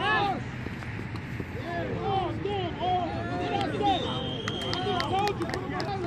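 Several people shouting and calling out at once during a flag football play, voices rising and falling without clear words. A steady high tone sounds for about a second around two-thirds of the way through.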